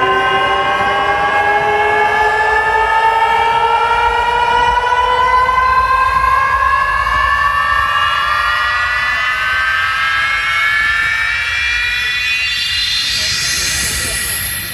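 A steady rising sweep tone with many harmonics, played loud through a stacked outdoor sound system. It climbs slowly in pitch for about fourteen seconds and fades near the end.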